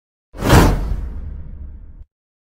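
Whoosh sound effect with a deep rumble for a subscribe-button animation, starting suddenly about a third of a second in and slowly dying away.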